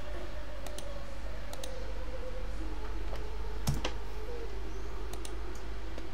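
A few scattered clicks of a computer keyboard and mouse while code is edited, several in quick pairs, over a steady low hum.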